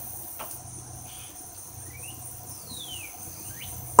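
Steady high chirring of insects in the background, with a few faint, thin chirps over it, one of them a longer falling one near the end.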